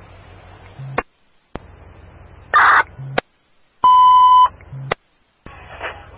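Fire department two-way radio heard through a scanner between transmissions: low static broken by the clicks of radios keying up and unkeying, a short burst of static about two and a half seconds in, and a loud, steady single beep lasting under a second about four seconds in.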